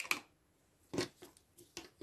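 Small scissors trimming the end of a handwoven inkle band: a few short, sharp clicks, the strongest at the start and about a second in, with lighter ones after.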